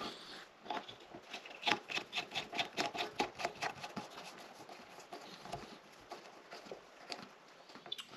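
Plastic coupling nut of a toilet supply hose being hand-threaded onto the fill valve's plastic shank: a run of faint quick clicks and scrapes, about three or four a second, thinning out in the second half.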